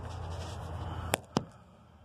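A low steady hum, then two sharp clicks about a fifth of a second apart just past the middle, after which the hum drops to a fainter level. This is consistent with the control knob of a 1991 Fedders window air conditioner being turned as it is switched over.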